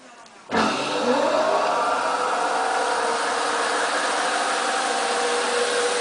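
Stainless-steel centrifugal dewatering machine for wet wool starting up about half a second in. Its motor and spinning basket give a whine that rises in pitch, then settles into a steady running hum.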